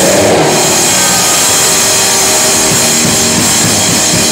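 Rock band playing loudly: electric guitar, bass guitar and drum kit with cymbals, the full band having just come in together.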